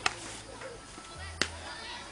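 Two sharp cracks about a second and a half apart, over a background of chattering voices.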